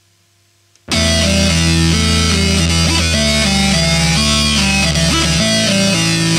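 Synthpunk band recording: a brief gap of near silence, then the band comes back in at full volume about a second in, with guitar and synthesizer over held low notes that step to new pitches every couple of seconds.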